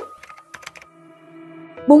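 A quick run of light, sharp clicks from an animated logo's sound effect, then soft background music with held chords. A narrator's voice comes in right at the end.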